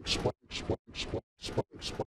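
A tiny fragment of a voice sample looped in a rapid stutter, about three to four repeats a second, each repeat ending in a hiss and the whole electronically distorted so that it sounds like record scratching.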